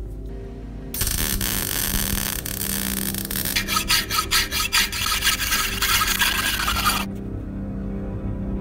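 Hand file rasping across the end of a steel pipe clamped in a vise, starting about a second in and stopping about a second before the end, in quick back-and-forth strokes, most distinct in the second half.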